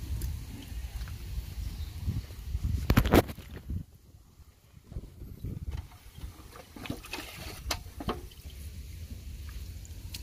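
Hands groping and sloshing in shallow muddy water, with irregular splashes and drips. The loudest splashes come about three seconds in, followed by a quieter stretch and then scattered small splashes.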